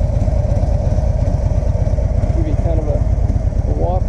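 2015 Harley-Davidson Freewheeler trike's V-twin engine idling steadily, with a low, even pulsing.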